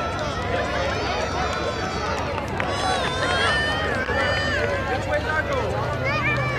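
Several overlapping voices of children and adults talking and calling out at once, some high-pitched, none clear enough to make out, over a steady low hum.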